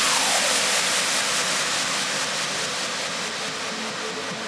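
A white-noise wash from an electronic trance track, loudest at the start and slowly fading, with soft held synth notes underneath.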